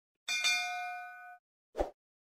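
Notification-bell 'ding' sound effect: a bright chime of several ringing tones that starts suddenly and fades out over about a second, with a click just after it strikes. Near the end comes one short, soft pop.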